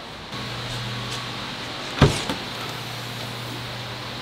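Steady hum of shop ventilation fans and air-conditioning units, with one sharp knock about halfway through.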